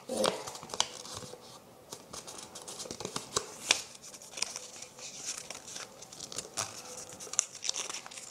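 A sheet of paper being handled, folded and pressed into creases by hand, giving scattered crinkles and sharp crackles, the sharpest a little past the middle.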